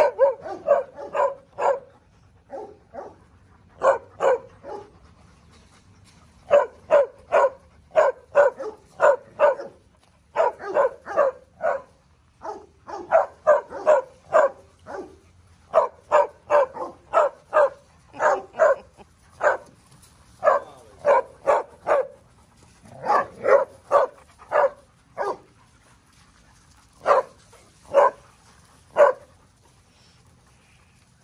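A dog barking over and over in quick runs of several barks, broken by short pauses. Near the end the barks come singly, about a second apart.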